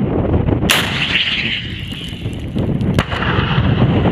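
M3 84 mm MAAWS (Carl Gustaf) recoilless rifle firing from the shoulder: one sudden, very loud blast less than a second in, followed by a long rumbling echo. A second sharp crack comes about three seconds in.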